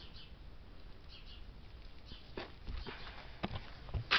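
Faint footsteps on a barn floor, a few steps about twice a second in the second half, over quiet barn background.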